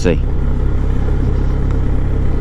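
Touring motorcycle ridden at low speed, heard from the rider's seat: a steady low engine rumble mixed with wind and road noise.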